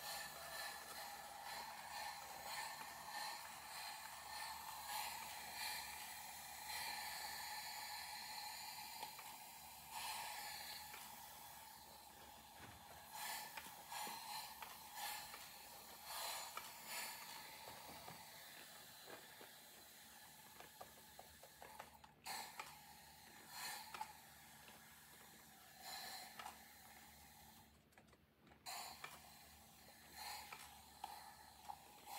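Hand spray bottle spritzing water onto wet paint in faint short bursts at irregular intervals, wetting the colours so they run and drip.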